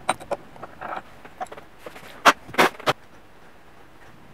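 Sharp metallic clicks of a ratcheting tap wrench turning a tap into an M12 hole in an aluminium plate. There are a few light clicks in the first second, then three louder ones about a third of a second apart a little past the middle.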